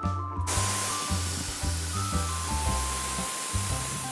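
Compressed air hissing steadily out of a garbage truck's air-suspension bags, starting about half a second in, as the truck lowers itself ahead of dumping its load.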